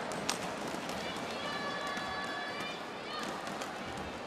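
Badminton rally: a sharp racket strike on the shuttlecock about a third of a second in, with smaller clicks and arena crowd noise throughout.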